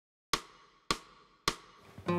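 Three sharp knocks, evenly spaced a little over half a second apart, each dying away quickly, in a steady beat like a count-in.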